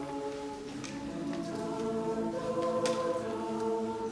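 Large mixed-voice a cappella choir, men and women, singing sustained held chords without instruments, with a few brief sibilant consonants cutting through.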